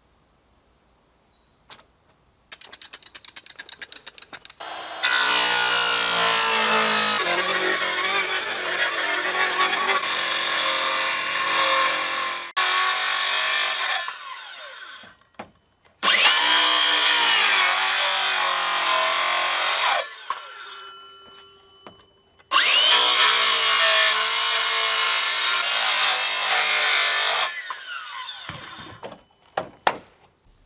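Cordless circular saw ripping lengthwise through 4-inch ABS plastic pipe to cut an open channel along it. It runs in three long cuts of several seconds each, the motor whine rising as the blade spins up and dying away between passes.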